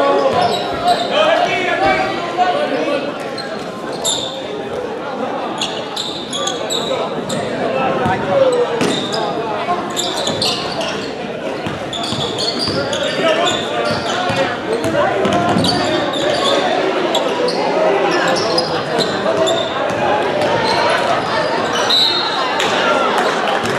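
Basketball game in a gym: the ball bouncing on the court and players' shoes squeaking, under steady crowd chatter and shouts that echo through the large hall.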